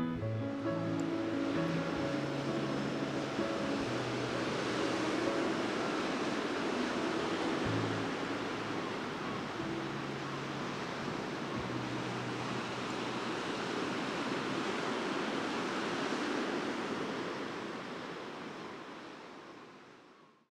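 Sea surf washing in steadily over soft background music of long held low notes, the whole fading out over the last few seconds.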